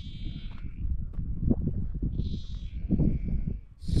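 Wind buffeting the microphone, a steady low rumble. Over it come two short, high, quavering animal calls, one at the start and one about two seconds later.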